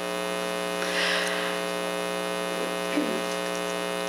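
Steady electrical mains hum in the sound system, a buzz with many evenly spaced overtones, with a brief soft hiss about a second in.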